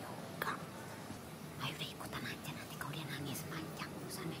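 Hushed whispering: several short whispered phrases, faint against a quiet room.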